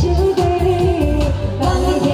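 A woman singing into a microphone over loud amplified backing music with a steady heavy bass beat.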